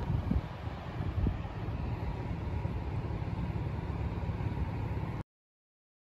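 Pickup truck driving, a steady low rumble that cuts off abruptly to silence about five seconds in.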